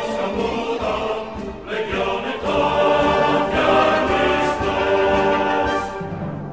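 Music of a choir singing with held chords, getting louder about two and a half seconds in.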